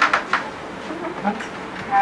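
A quick run of knocks on a wooden door in the first half-second, followed by a single short spoken "What?" about a second in.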